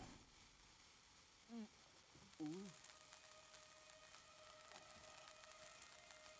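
A lit dynamite fuse fizzing faintly, a cartoon sound effect, from about halfway in. Before it come two short grunts from a character, the second the louder.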